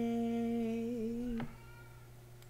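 A woman's unaccompanied singing voice holding the song's long final note at one steady pitch, wavering slightly just before it stops about a second and a half in.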